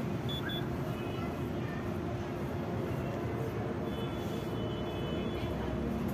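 Two short high electronic beeps from an ice cream vending kiosk's card payment terminal or touchscreen, about half a second in, over a steady low hum and street background noise.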